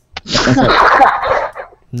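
A loud, breathy burst of a person's voice close to the microphone, lasting about a second.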